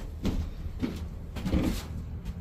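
Scuffs and light knocks of the camera being handled and moved, over a steady low hum from the ductless mini-split's running air handler.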